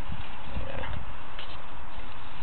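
Sewer inspection camera's push cable being pulled back through the drain line: a steady hiss with a few irregular low knocks and faint clicks.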